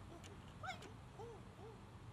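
A few faint, short animal calls, about two a second, over a low steady hum and outdoor background.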